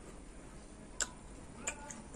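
A person chewing crisp raw papaya with the mouth closed: two sharp clicks, one about a second in and one near the end, over quiet chewing.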